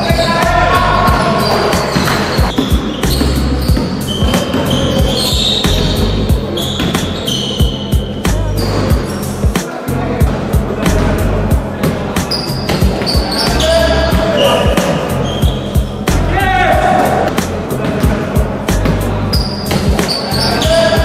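Basketball game sounds on an indoor court: the ball bouncing on the floor again and again, with players' voices, over a music track with a steady bass line.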